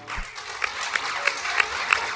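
Audience applauding, the clapping building up quickly in the first half second.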